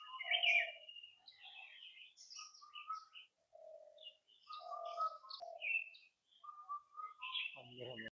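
Wild birds calling: a faint scatter of short chirps and whistled notes from several birds, overlapping throughout.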